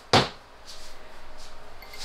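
A single sharp knock just after the start, short with a brief ringing tail, followed by quieter room sound.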